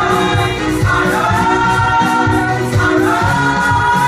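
Gospel praise-and-worship singing by a group of women on microphones through a PA, holding long notes that glide between pitches, over a steady low beat.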